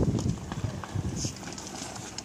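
Footsteps on a wooden deck: a run of irregular dull thumps.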